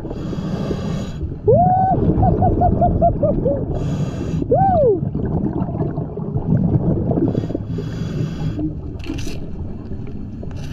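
Scuba regulator breathing underwater: three hissing inhalations a few seconds apart, with bubbling exhalations and low rumble between them. Between about one and a half and five seconds in, a muffled voice hums through the mouthpiece in a string of short rising-and-falling notes.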